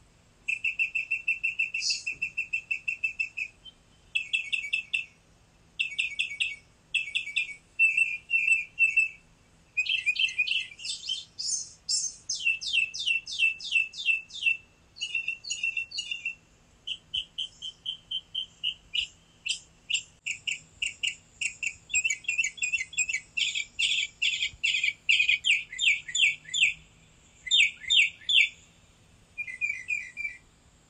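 Small songbirds singing continuously: rapid runs of high chirps and trills, several notes a second, broken by short pauses.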